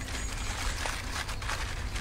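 Outdoor woodland ambience: a steady background hiss with a low rumble underneath and no distinct event.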